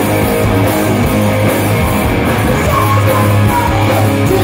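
Glam metal band playing live at full volume: distorted electric guitars over bass and drums, with a guitar line bending in pitch about three seconds in.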